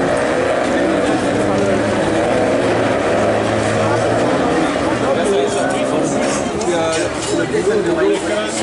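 Engines of several Renault Clio rallycross cars running as the pack drives through the wet, muddy section, with a commentator's voice talking over them, most clearly in the second half.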